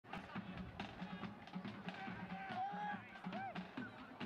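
Soccer stadium sound: a steady beat, about three pulses a second, with a few drawn-out shouted calls from voices over it.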